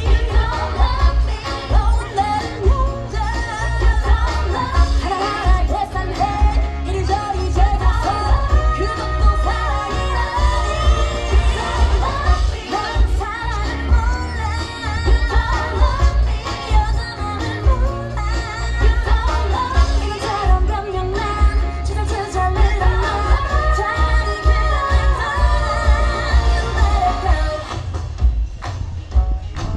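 A K-pop song with female vocals and a heavy, pulsing bass beat, played loudly over stage loudspeakers.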